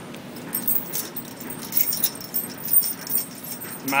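Irregular clicks and rustling from calves and a kitten moving about in a hay-bedded pen, with light clinking of metal.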